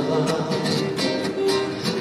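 Acoustic guitar being strummed in a steady rhythm, accompanying a Persian song in a pause between sung lines.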